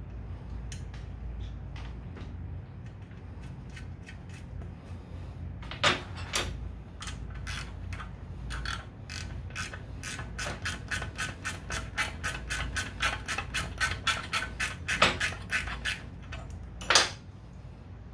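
Hand ratchet wrench clicking in a quick, even run, about three to four clicks a second, as a muffler-mounting bolt is turned. A few sharp single metal knocks from the tools come before and after the run, the loudest soon after it ends.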